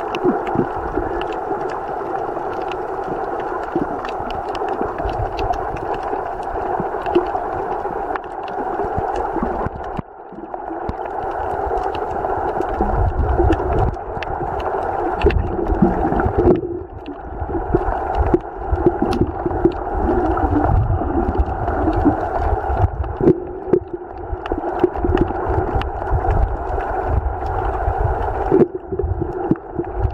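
Underwater sound picked up by a camera in a waterproof housing: a steady muffled hum with scattered faint clicks, and low rumbling water movement from about twelve seconds in.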